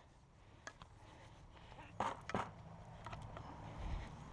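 Quiet handling noise with a few short knocks, the two loudest about two seconds in.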